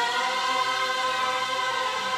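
Background music: voices singing one long held chord.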